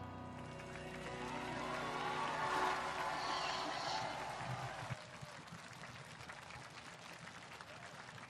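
Studio audience applauding over the closing music of a live ballad performance, a dense steady crackle of clapping. A sung or cheered note arches up and back down in the first half.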